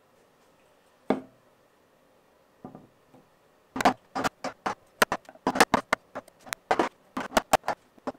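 Mallet striking a chisel to chop out the waste between saw kerfs, cutting a groove in a hardwood piece. A single sharp knock comes about a second in, then from about four seconds a quick, irregular run of sharp strikes, about three a second.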